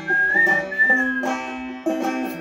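Banjo being picked while the player whistles a melody over it; the whistled tone wavers up a little and stops about a second in, while the plucked notes carry on.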